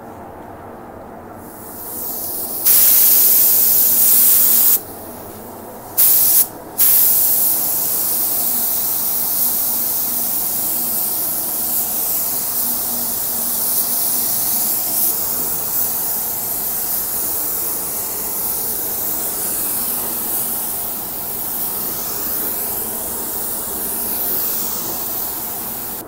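Gravity-feed paint spray gun hissing with compressed air as it lays a wet coat of paint on a car hood. A burst about three seconds in and two quick bursts around six seconds, then one long continuous spray from about seven seconds on.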